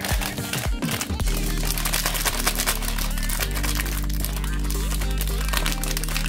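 Foil pouch crinkling as it is pulled from its box and handled open by hand, over background music.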